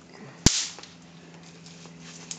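A snap pop (bang snap) thrown down onto concrete, going off with one sharp crack about half a second in, followed by a brief fading hiss.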